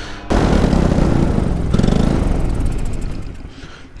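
Paramotor engine and propeller throttled up suddenly, then losing power and dying away over the last second or so: the engine cutting out, which the pilot puts down to worn perishable parts he had not replaced.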